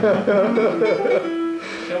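J M Santos handmade classical guitar being fingerpicked, with a single note held and ringing out just past the middle, under a man's voice in the first half.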